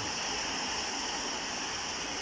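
Heavy rain falling, a steady, even hiss.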